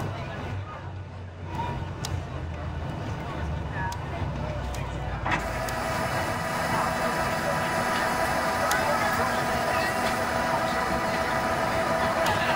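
Cabin noise in a Boeing 737-800 rolling along the runway after touchdown: a low rumble from the wheels and airframe, then a click about five seconds in, after which the CFM56 engines' steady whine comes up and grows gradually louder.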